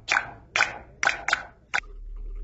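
A quick, irregular series of sharp clicks, about two a second, each dying away fast. They stop near the end, when a steady low hum comes in.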